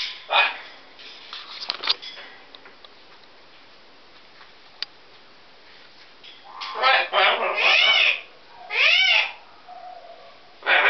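Pet parrots calling: two short calls in the first two seconds, then a run of loud, harsh squawks from about seven to nine seconds in, the last one arching up and down in pitch.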